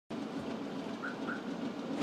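Steady low outdoor background noise, with two faint short chirps a little after a second in.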